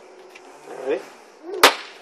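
A single sharp crack from a small pull-string popper going off as its string is yanked, about one and a half seconds in.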